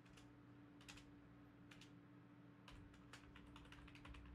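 Faint typing on a computer keyboard: a handful of irregular, scattered keystrokes over a low steady hum.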